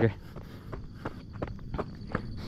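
A runner's footfalls on a dirt-and-gravel track: short, even steps at about three a second.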